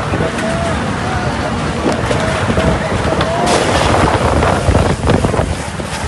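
Strong storm wind buffeting the phone's microphone as a steady, heavy rush of noise, with people's raised voices calling out through it. A series of sharp knocks and clatters comes in the second half.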